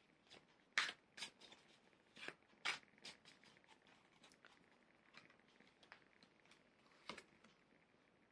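Tarot cards being handled and drawn from the deck: faint, scattered card clicks and rustles, several in the first three seconds and one more near the end.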